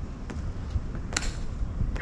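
Marching soldiers' heels striking the stone plaza in sharp clicks, about one every second, some louder than others, over a low wind rumble.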